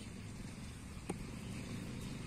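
A single sharp knock about a second in: a cricket bat striking the ball. Under it a steady low rumble.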